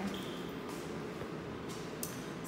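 Low, steady room noise: an even hiss with no distinct events.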